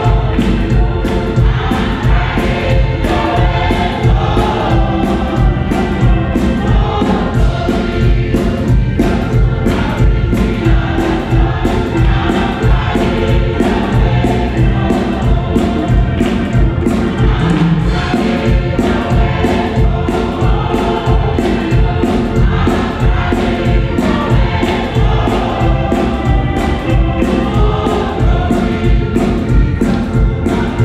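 A gospel choir singing an upbeat song, with hand-clapping and instrumental backing on a steady beat.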